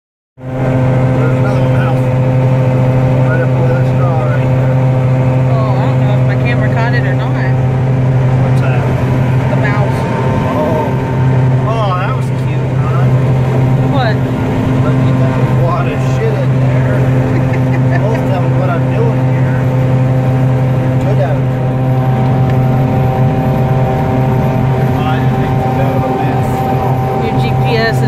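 Combine harvester running steadily while harvesting alfalfa seed, heard from inside the cab: a loud, even drone with a strong low hum and overtones.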